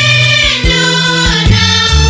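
Youth choir singing a Swahili gospel song in harmony over a bass line and a steady drum beat.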